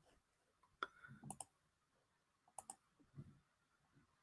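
Near silence broken by a few faint clicks from a computer, some in quick pairs, about a second apart.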